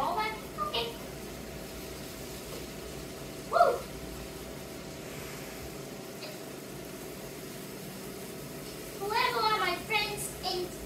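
Steady hiss and hum from black bean patties frying in a pan on a portable gas stove. Short voice sounds come right at the start, once about a third of the way in (the loudest moment) and again near the end.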